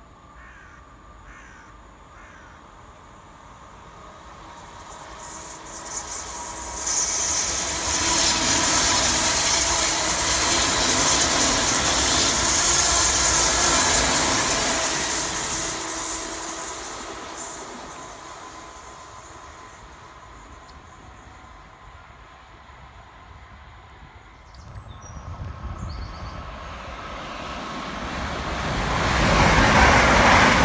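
Electric multiple-unit passenger train passing through the station on the main line: a rush of wheels on rail that builds, is loudest for several seconds in the middle, then fades. Near the end a second electric train comes in close on the near line, growing loud.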